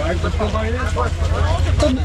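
Speech: people talking close by, over a steady low rumble.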